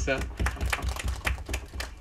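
Brief scattered applause: a small audience clapping irregularly for about two seconds.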